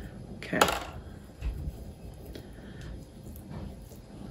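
Soft scraping and rustling of damp coconut coir being spooned and pressed into a small seed-starter pot, with a few faint ticks and a soft knock.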